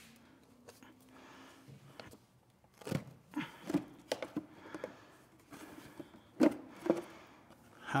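Sharp plastic clicks and knocks as a screwdriver pries the clips of a CFMOTO ATV's plastic airbox lid and the lid is lifted off. About half a dozen separate snaps come from about three seconds in, clustered in two groups.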